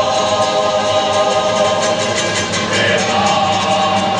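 Cape Malay male choir singing a comic song in chorus, with a lead voice in front, over a steady strummed accompaniment of guitars and other string instruments.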